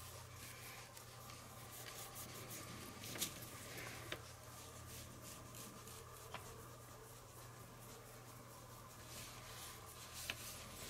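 Faint scratchy rubbing of a finger and a paintbrush working weathering powder into the textured bricks of a small wall model, with a few light clicks along the way.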